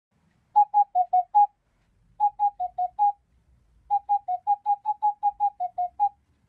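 A short jingle of quick, separate whistle-like notes in three phrases: five notes, five more, then a run of about a dozen. The pitch stays almost level, dipping slightly within each phrase.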